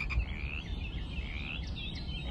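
Frogs calling in a few short rising chirps, roughly a second apart, over a low steady rumble of outdoor ambience.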